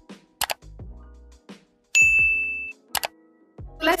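Background music with sharp clicks, and one bright ding about two seconds in that holds a steady pitch for under a second. It is the loudest thing here.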